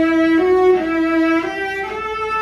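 Cello played on the A string with a pronounced figure-eight bow stroke, the motion used on the higher strings for a big sound. It plays a short phrase of sustained notes that step up and down by small intervals.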